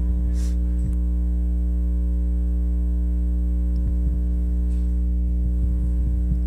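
Steady low electrical mains hum with a buzzing stack of overtones, unchanging throughout, with a couple of faint knocks.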